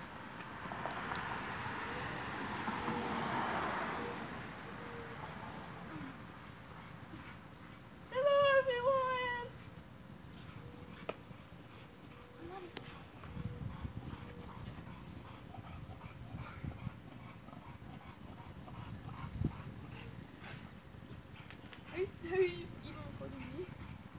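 A loud animal cry about eight seconds in, lasting just over a second in two wavering, high-pitched parts, over faint outdoor background.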